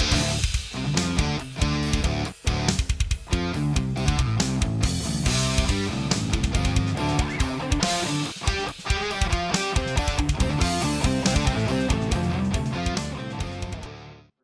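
Schecter Sun Valley FR electric guitar played with heavy distortion through a Mesa amp, riffing over a drum backing track. The music tails off and stops right at the end.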